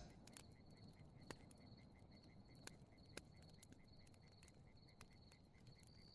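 Very faint campfire-and-night ambience: crickets chirping steadily, with a few soft wood crackles from the fire.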